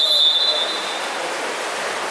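Referee's whistle: one shrill, steady blast that stops about a second in, followed by the splashing and voices of an indoor pool hall.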